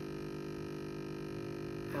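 Espresso machine running steadily while pulling a shot: its pump gives an even, unchanging electric hum as the espresso pours into the cup.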